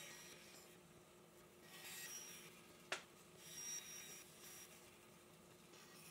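A bandsaw runs very faintly as it cuts stopped slots into 3/4-inch Baltic birch plywood, with a steady low hum and two soft swells of cutting noise. There is one sharp click about three seconds in.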